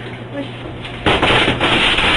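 A man shouting, harsh and distorted, with a short "Oui!" and then a loud, rough outburst starting about a second in, over a steady low hum.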